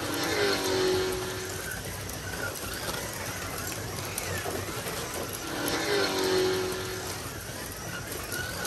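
Carrera Digital 1/24-scale slot cars running without magnets around the track, their small electric motors whining. The sound swells twice as cars pass close, about a second in and again about six seconds in, each time with a whine that rises and falls in pitch.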